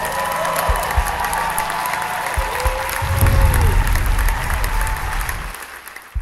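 Audience applauding, a dense patter of many hands clapping, fading out near the end.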